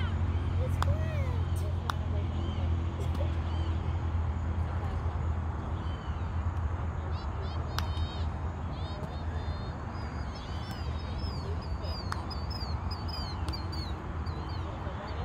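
Birds chirping with short repeated calls, busiest in the second half, over a steady low rumble. A few sharp knocks sound now and then.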